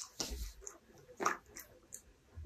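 Dog chewing a treat with its nose in a basket muzzle: two short bouts of chewing about a second apart, with a few light clicks.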